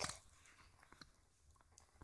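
Near silence with faint handling noise: a short click right at the start and a fainter tick about a second in, from fingers holding a soft foam squishy toy against the phone.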